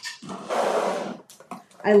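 A scraping rustle of craft supplies being handled, lasting about a second, followed by a few light clicks as things are set down.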